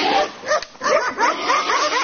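Hunting dogs barking and yelping in quick short calls, several a second, over a constant background noise.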